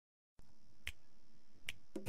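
Faint hiss that starts about half a second in, with two sharp clicks a little under a second apart.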